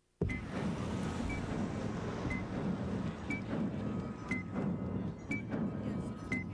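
Television countdown-clock sound effect: a short high beep about once a second over a low rumbling score. It starts suddenly after a brief silence.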